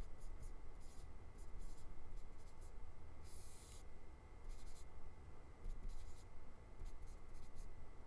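Stylus scratching and tapping on a tablet screen as numbers are handwritten, in short irregular strokes with brief pauses. A faint steady high tone sits underneath.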